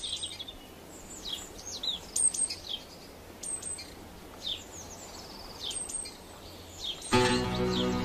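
Small birds chirping in the background over a faint outdoor hiss, short high falling calls every second or so. Music with held notes comes in about seven seconds in.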